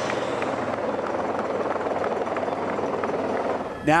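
Steady, even drone of motor engines from the race vehicles around the riders.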